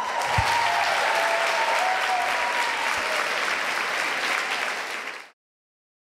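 Audience applauding, steady throughout and cutting off abruptly about five seconds in.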